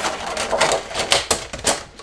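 Plastic food tray and its clear plastic lid being handled and put away, a quick run of crackling clicks and clatters, loudest right at the start.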